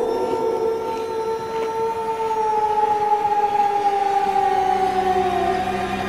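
A man's long, held scream, sliding slowly down in pitch and breaking off near the end.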